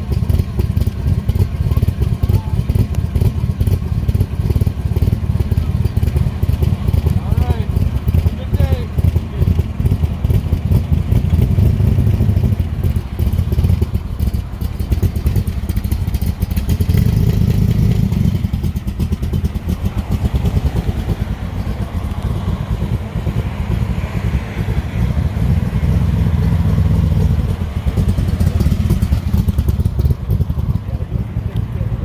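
Cobra-style roadster's V8 running at a low, loping idle through its side-mounted exhaust pipes. The engine note swells a couple of times as the car eases forward to pull out.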